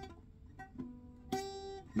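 Acoustic guitar playing a G-shape chord with an added fretted note, softly at first and then more firmly about a second and a half in, ringing briefly. This is a trial voicing that the player finds doesn't work.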